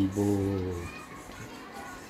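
A voice humming one long low note that wavers at first, then holds steady and stops just under a second in.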